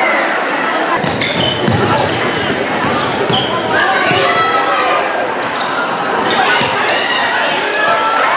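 Basketball bouncing on a hardwood gym floor, a few bounces in the first half, under the steady talk and shouting of a crowd of spectators in a large, echoing gymnasium.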